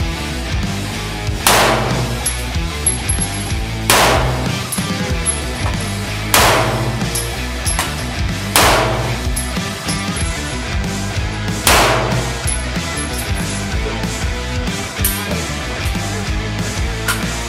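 Five pistol shots from a Beretta 92FS 9mm in slow, deliberate aimed fire, about two to three seconds apart, over background music.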